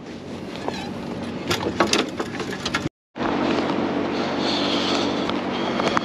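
Sharp clicks and knocks of fishing rods being handled in the rod holders of a boat's hard top. After an abrupt cut about three seconds in, a steady low hum with a few held tones follows.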